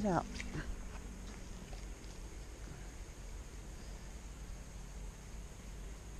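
Low, steady wind rumble on the microphone with a faint hiss behind it.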